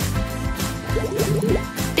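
Background music with a steady beat, over a wet dripping squelch as halved cotton pads are pressed into a bowl of wet coffee grounds, honey and water and soak it up.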